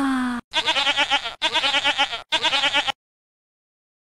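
A falling pitched tone ends, then a pitched cry with a fast, even tremble sounds three times in quick succession, each under a second long. The sound cuts off abruptly to dead silence about three seconds in.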